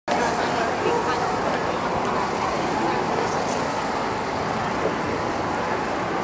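Steady city-street background: traffic noise mixed with the voices of passers-by.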